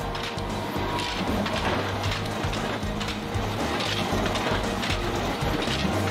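Rotary coal-briquette press running, noisy and steady, with a faint stroke repeating about once a second; background music plays over it.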